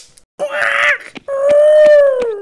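A cartoon bird's cry as it is struck by a thrown rock: a short squawk, then one long wailing cry that drops in pitch at the end.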